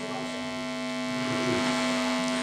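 A steady droning hum made of several held tones, with no singing over it.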